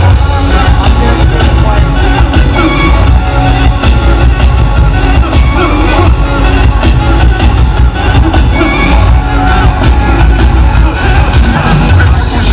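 Loud live hip-hop band music over a PA system: a heavy bass beat with band instruments and vocals through microphones, with the crowd audible underneath.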